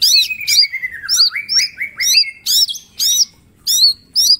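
A green leafbird (cucak ijo) singing loudly: sharp, arched whistled notes repeated about twice a second. In the first half, a lower run of quick notes falls in pitch and then climbs again.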